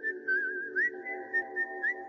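Ringtone music between spoken announcements: a whistled tune that wavers and now and then slides up in pitch, over a steady held chord.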